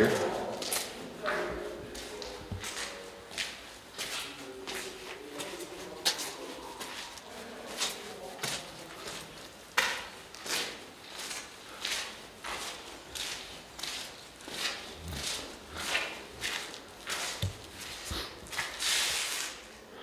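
Footsteps on a grit- and rubble-strewn concrete floor, crunching at a steady walking pace, about one or two steps a second.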